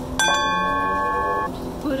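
A metal singing bowl struck once, a moment in, ringing with several clear, steady tones for over a second, marking the end of the chant. Chanted voice comes back in near the end.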